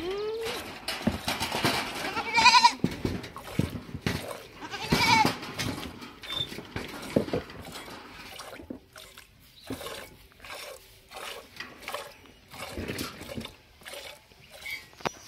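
A goat bleating twice, about two and a half and five seconds in, each call a wavering cry. Between and after the calls come short repeated strokes of milk squirting into a steel pot as the goat is milked by hand.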